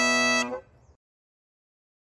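Highland bagpipes holding a steady note over their drones, cutting off about half a second in and followed by dead silence.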